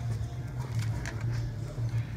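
Steady low room hum with a few faint ticks and knocks.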